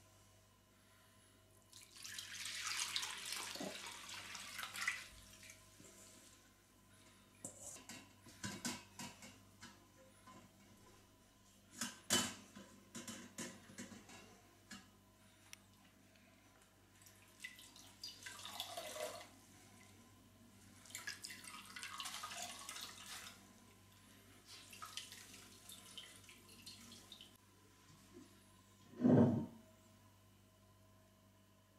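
Liquid poured from a bowl through a cloth-lined sieve into a steel pot, splashing and trickling, then running out in short spurts as the soaked tea towel is wrung out over the sieve. Several sharp metal clicks sound in between, and a single deep thump comes near the end.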